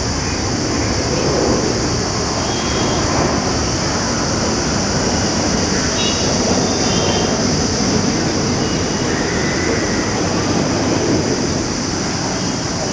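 Steady rushing noise throughout, with a few faint short high chirps around the middle.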